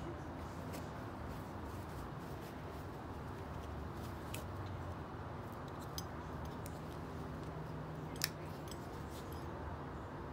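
A small Kershaw pocketknife being unwrapped and handled, giving scattered faint clicks and one sharper click about eight seconds in, over a steady low room hum.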